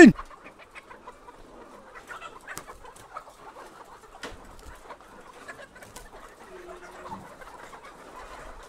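Flock of caged laying hens clucking faintly, with a few short sharp clicks and knocks scattered through.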